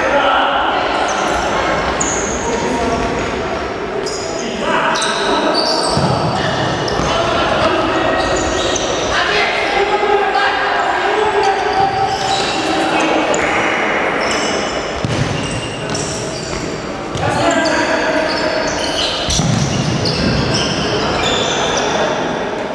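Futsal play on a wooden hall floor: players' shouts and calls echoing in a large sports hall, with the ball thudding as it is kicked and bounces.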